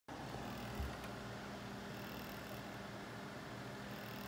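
Steady low room noise: a constant electrical hum with hiss, and one soft bump just under a second in.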